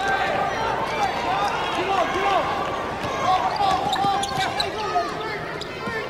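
Sneakers squeaking on a hardwood basketball court and a basketball being dribbled, over the steady murmur of an arena crowd.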